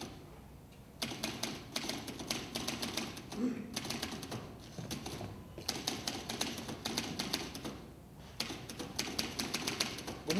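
Typewriter being typed on: quick runs of key strikes in four bursts, with short pauses between them.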